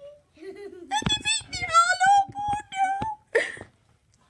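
A young child's high-pitched voice, drawn out in long wavering tones like a sing-song wail, with a short breathy burst near the end.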